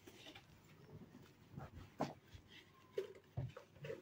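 Soft scattered knocks and thuds with a few short creaks from a person walking onto a carpet and handling a wooden object; the loudest thuds come about two and about three and a half seconds in.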